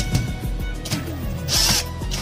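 Background music with two short bursts of a cordless drill driving screws, one right at the start and one past the middle.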